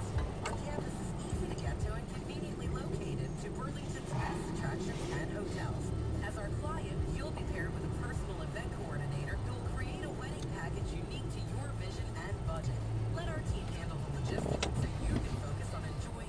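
A car idling at a standstill, heard from inside the cabin as a steady low rumble, with faint talking over it.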